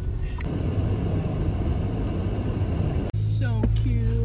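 Steady low rumble of vehicle cabin noise, engine and tyres, heard from inside a pickup truck driving on a snow-covered road. About three seconds in it cuts off abruptly to a steadier low hum.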